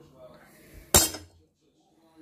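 A kitchen knife set down on a wooden chopping board: one sharp knock with a short ring, about a second in.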